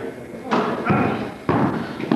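Two thuds about a second apart: a basketball hitting a hardwood gym floor, with a short echo in the hall and voices in the background.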